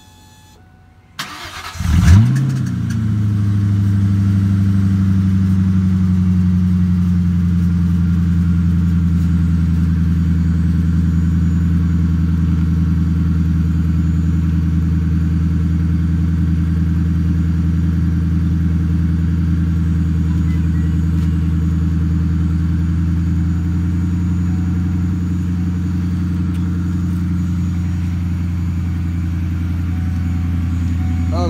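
Cold start of a 1997 Ford Mustang GT's 4.6-litre V8 running with the mufflers removed, exhaust open after the catalytic converters: the starter cranks briefly about a second in, the engine catches with a quick rev, then settles into a loud, steady high idle that eases down slightly.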